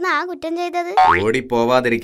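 Cartoon characters' voices in dialogue: a high, wavering voice, then from about a second in a second, fuller voice with a steady low tone beneath it.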